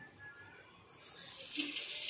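Cooking oil poured from a steel tumbler into a clay pot on the stove, with a steady hiss that starts suddenly about a second in as the oil meets the hot pot.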